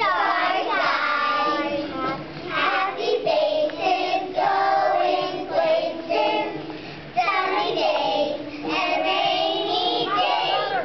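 Young children singing a song, with a brief pause about seven seconds in before the singing picks up again.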